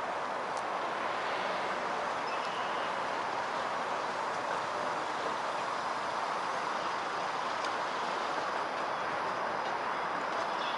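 Toronto streetcar rolling along its tracks amid street traffic, heard as an even, steady running noise with no distinct knocks or horns.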